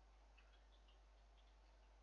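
Near silence: room tone with a steady low hum and a few very faint ticks in the first half.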